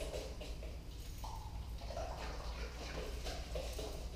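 A dog moving about close by: faint scattered footfalls and breathing over a steady low hum.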